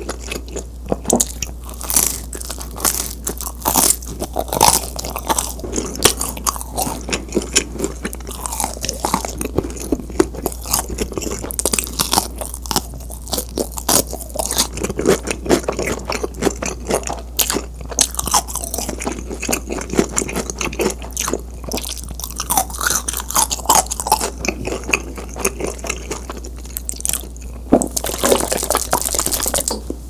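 Close-miked, loud chewing of crusty pizza crust: dense, irregular crunching and wet mouth sounds with no talking. A louder, noisier burst comes near the end.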